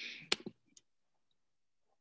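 A short breathy sound and one sharp click in the first half second, a faint tick just after, then near silence.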